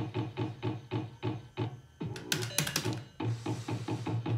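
Fruit slot machine's electronic beeping as its lights chase around the board during a spin, a fast even run of short beeps about five a second, with a brief cluster of sharp clicks a little past halfway.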